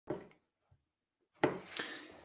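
A short click, about a second of near silence, then brief rustling noises close to the microphone starting about a second and a half in.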